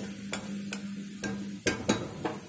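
Steel spatula stirring and scraping a thick masala paste as it fries in a metal kadai, with a faint sizzle underneath. The spatula clacks against the pan about six times, the two loudest near the end.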